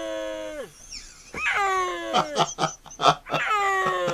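Snow leopard calling in place of a roar: long, drawn-out yowls, each dropping in pitch at its end, about every two seconds. A man laughs in bursts between them.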